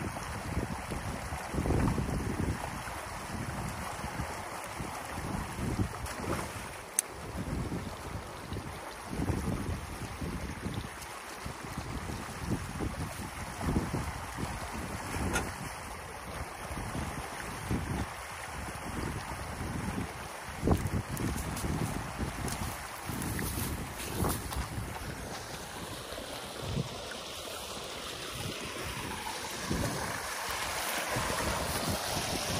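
Water rushing through a breach in a beaver dam in a small canal, with wind buffeting the microphone in irregular gusts. Near the end the rushing water grows louder and hissier, heard close up.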